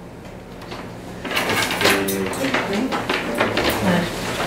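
Paper rustling as envelopes and documents are handled on a table, starting about a second in, with brief low voices.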